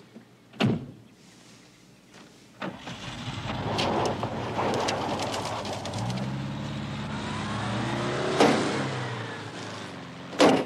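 A car door shuts about half a second in. Then a Volkswagen Beetle's engine starts and runs as the car pulls away. A sharp bang comes near the end.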